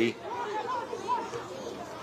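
Faint, indistinct chatter of several voices, the background sound of a soccer match.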